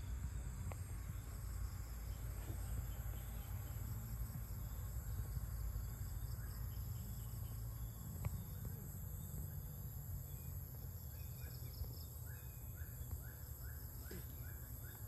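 Steady high-pitched insect chirring over a low rumble, with a run of short repeated chirps, about two a second, near the end.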